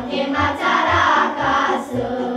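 Girls' vocal group singing together over instrumental accompaniment, with a low beat pulsing about twice a second; the voices swell louder in the middle.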